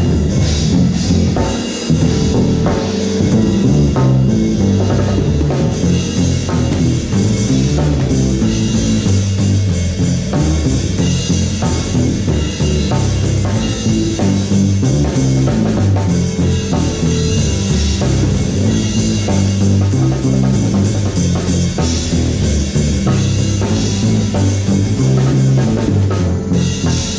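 A band playing: a six-string electric bass plays a busy bass line over keyboard and drums, steady and loud throughout.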